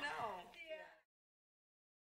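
A voice with falling, sliding pitch fades out in the first second. Then the audio cuts to dead silence as the recording ends.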